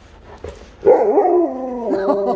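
Large husky vocalizing in a long, wavering, howl-like call that starts just under a second in and is held, its pitch stepping up and down.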